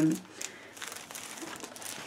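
Faint crinkling and rustling of a plastic-wrapped package being handled and lifted.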